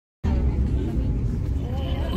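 Busy street ambience: a steady low rumble of slow traffic under the voices of a crowd, cutting in a moment after the start.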